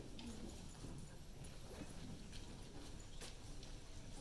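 Footsteps on a wooden stage: scattered light clicks of shoes, with faint murmuring in the hall.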